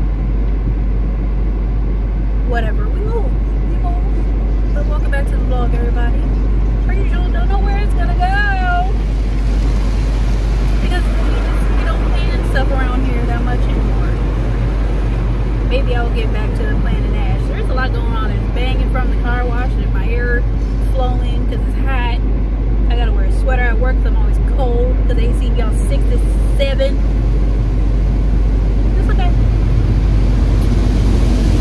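Car engine idling, heard inside the cabin as a steady low hum. A woman's voice talks over it.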